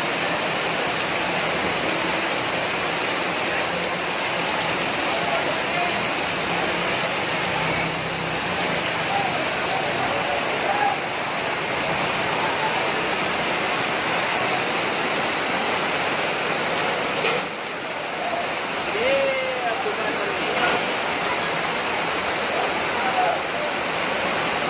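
Floodwater rushing down a street, a steady loud rush of fast-flowing water. Faint voices of people come through now and then.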